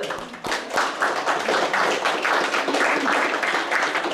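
Congregation applauding: many hands clapping together, thickening about half a second in and then holding steady.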